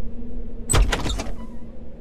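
Door handle and latch being worked, a quick run of sharp clicks about a second in, over a low steady music drone.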